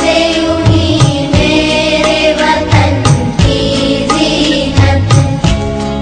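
Music with sustained melodic lines over repeated low drum beats, with little or no singing.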